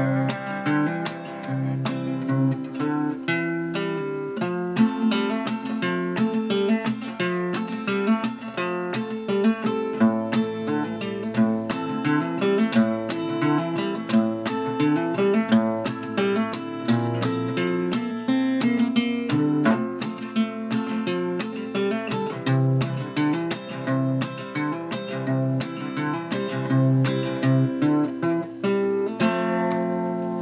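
Acoustic guitar played solo, a steady run of picked and strummed chords, ending on a chord that is left to ring in the last second.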